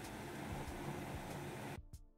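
Faint, steady hiss of background room noise with no speech, cutting off abruptly near the end.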